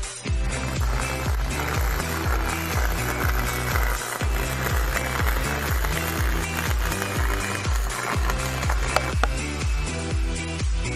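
Background electronic dance music with a steady bass beat, about two beats a second.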